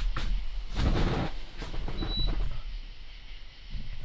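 A rustle and faint clicks of handling, with a brief high-pitched beep about two seconds in, over a steady low hum.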